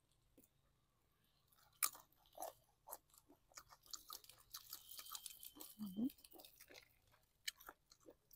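Close-up chewing of a crisp raw bite dipped in spicy fermented-fish (pla daek) relish: a sharp crunch about two seconds in, then a run of irregular wet crunches, with a hissing stretch in the middle.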